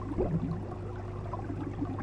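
Fish tank bubbler: a steady stream of small bubbles popping and gurgling over a low, even hum, with one larger gurgle near the start.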